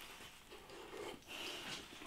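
Faint sounds of a bite into a hot, crisp-based pizza slice and chewing, with breath puffed out through the mouth near the end against the heat.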